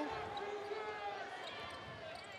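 Arena sound of a basketball game in play: a steady crowd hum, easing off slightly, with a basketball being dribbled on the court.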